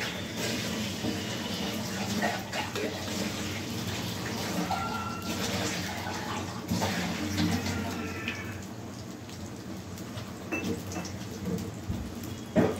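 Egg sizzling in a frying pan over a gas burner, with a spatula scraping and knocking against the pan as the egg is broken up and stirred.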